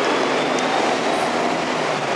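Steady mechanical rumble and hiss of a large vehicle passing, with a faint low hum and no clear breaks.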